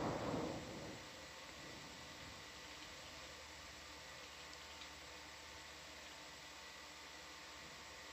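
Faint steady hiss on an audio feed, with a few thin steady hum tones running under it. A brief noisy rustle comes in the first second.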